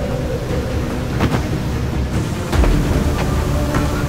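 Low rumbling drone from a dramatic soundtrack, with a few sharp hits and a deep boom about two and a half seconds in, followed by a faint held tone.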